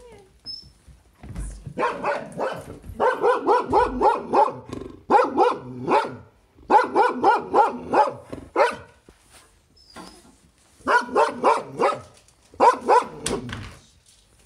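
A dog barking at something outside the window, in quick volleys of several barks with short pauses between: alert barking at the window.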